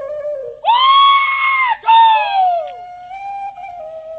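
Two long, loud, high-pitched yells from a man, the first held steady and the second falling away at its end, over steady flute-like background music.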